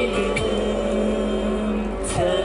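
Live pop song: a male singer holding long notes into a handheld microphone over an instrumental backing track.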